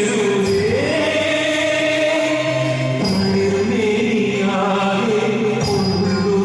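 Folk dance music: a voice singing long held notes over a steady accompaniment.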